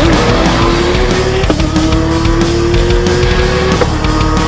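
Porsche 911 race car's flat-six engine accelerating hard through the gears: its pitch climbs steadily and drops at an upshift about one and a half seconds in and again just before the end. Rock music plays underneath.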